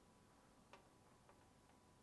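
Near silence with two faint clicks, about a second apart: a small screwdriver working out one of the tiny screws of a MacBook Pro's aluminium bottom case.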